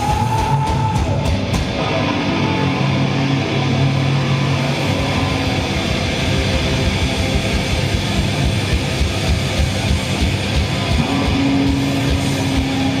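Heavy metal band playing live without vocals: distorted electric guitars over drums with a fast, steady kick-drum pulse, at loud concert level.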